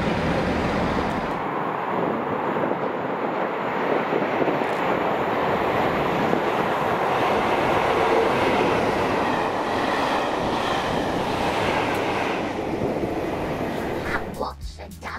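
Two Class 47 diesel locomotives with Sulzer twelve-cylinder engines. A low engine rumble in the first second and a half gives way to the pair running past at speed with their coaches, engine and wheel-on-rail noise swelling to its loudest about eight seconds in, then dying away.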